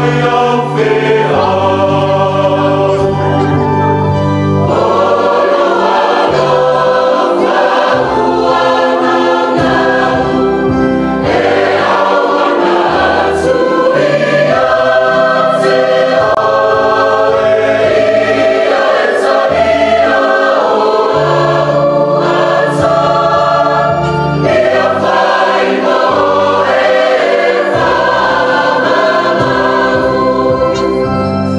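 A choir singing a hymn in full harmony, over held bass notes and chords from an electronic keyboard.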